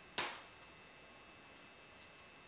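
A single sharp snap a moment in, dying away quickly, then faint room tone.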